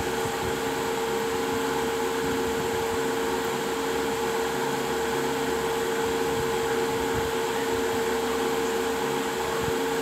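A steady machine-like whir with a constant hum at one pitch, unchanging throughout.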